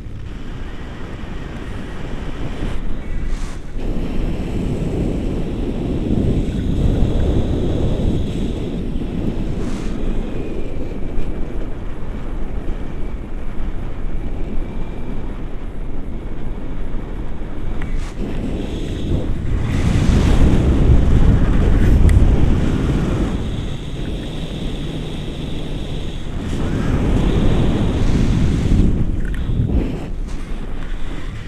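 Wind buffeting the microphone of a camera held out from a tandem paraglider in flight: a steady low rush that swells and fades, loudest about two thirds of the way in and again near the end.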